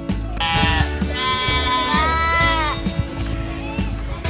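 A goat bleating twice, a short call and then a longer one that drops in pitch at its end, over background music with a steady beat.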